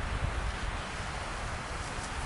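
Boiling water poured from an aluminium beer-can pot into a bowl of ramen noodles, a steady soft hiss over a low wind rumble on the microphone.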